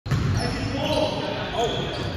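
Basketball dribbled on a hardwood gym floor, the bounces ringing in a large hall, with voices in the background.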